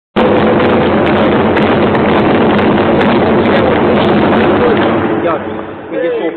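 Crowd of spectators in an indoor sports hall cheering and shouting loudly and steadily. Near the end it dies down to a few separate shouts.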